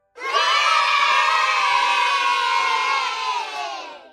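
A group of children cheering together in one long shout that fades out near the end.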